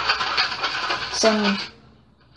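Plastic spoon stirring and scraping in a plastic bowl of water and powdered laundry detergent, a steady scratchy noise as the undissolved grains are mixed in. A short spoken word follows after about a second.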